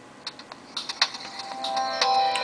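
A few light clicks and taps from the Samsung Android phone being handled, then near the end the phone's boot-up chime begins through its small speaker, rising in level as the freshly flashed ROM starts up.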